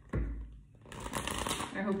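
A tarot deck being riffle-shuffled by hand: a sudden burst of cards riffling together just after the start, dying away, then softer rustling as the cards are bridged back into one stack.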